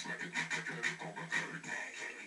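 Breathy laughter in quick, even bursts, about four a second.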